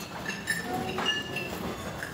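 Hall room noise during a pause: a low murmur with scattered light clinks of dishes and cutlery, short ringing tings.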